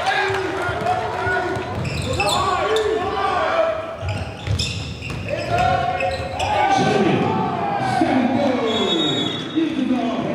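Basketball bouncing on a hardwood gym floor during live play, with voices of players and spectators calling out throughout, in the reverberant space of a large gym.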